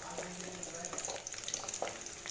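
Sliced shallots and garlic cloves sizzling in hot oil in a coated pan, stirred with a spatula: a steady frying hiss with small crackles.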